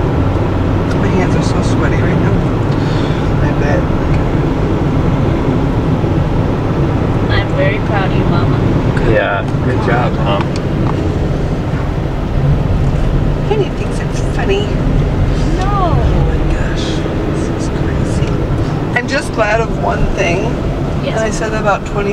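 Steady rumble of a car's engine and tyres inside the cabin while climbing a winding mountain road, with faint, indistinct voices now and then.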